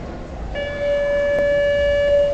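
A horn sounding one steady, held note, starting about half a second in.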